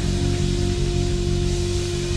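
Live band music: a sustained note held over low bass notes.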